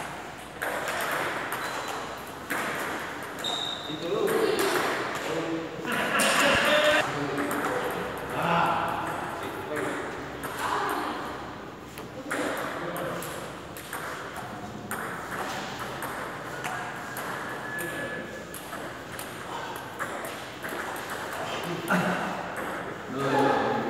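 Table tennis balls repeatedly clicking off paddles and the table tops, short sharp hits at an irregular pace, with voices in the hall.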